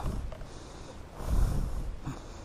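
A person's breath: a short, rushy exhale close to the microphone, a little over a second in.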